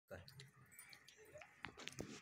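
Near silence with a handful of faint, scattered clicks and light rustling from a phone being handled.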